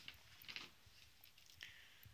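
Near silence: room tone with a few faint, brief rustles and ticks.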